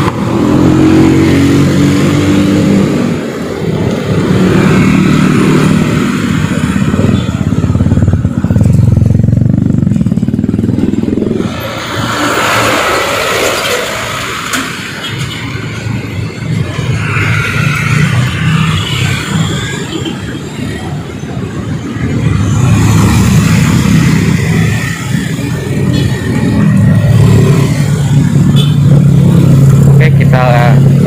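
Busy road traffic: cars and motorcycles passing close by at low speed, engines running. The sound swells as each vehicle goes past, with a quieter stretch midway and the loudest passes near the start and the end.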